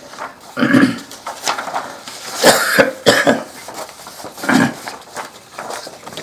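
A person coughing and clearing their throat in three short bursts, the middle one a run of several coughs, with light rustling of photo prints being handled.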